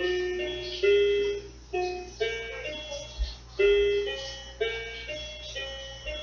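A slow melody played on an instrument, one note at a time, about one or two notes a second, each note starting sharply and fading away.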